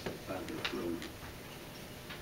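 A man's brief, low, hummed murmur in the first second.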